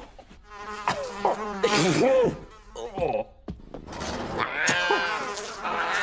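Cartoon housefly buzzing, its pitch swooping up and down as it flies about, with a brief break about halfway through.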